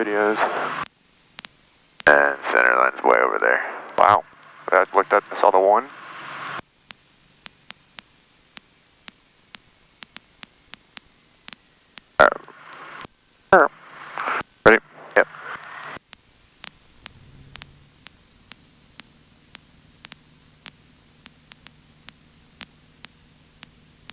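Voices in the cockpit headset audio, too unclear to make out, in two stretches. Between them and after them come faint, evenly spaced clicks about two a second, and in the last few seconds a low steady hum.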